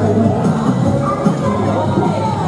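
Upbeat show music playing over loudspeakers, with a crowd of spectators cheering and calling out over it.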